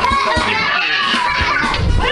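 A cat yowling in long, wavering cries while held down for a bath, over background music.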